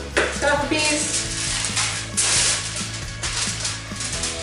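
Heavy-duty aluminum foil crinkling and rustling in repeated bursts as it is handled and crumpled around a small glass jar, over steady background music.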